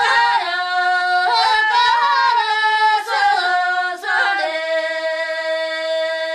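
Tibetan folk song sung by a single high, unaccompanied voice, with quick ornamented turns in pitch that settle about four and a half seconds in into one long held note.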